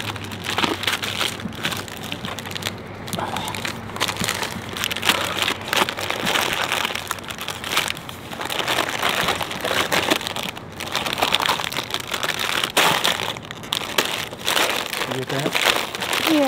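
Plastic snack wrappers crinkling and rustling as packets of chips and cookies are handled and sorted in a cardboard box, in a continuous run of short crackles.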